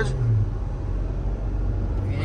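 Engine and road noise inside a Mahindra Scorpio-N's cabin as it is driven hard in a drag race: a steady low engine drone that drops away about half a second in and returns near the end.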